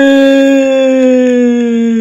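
A man's loud, drawn-out cheer, 'ueeei', held on one note that sinks slowly in pitch.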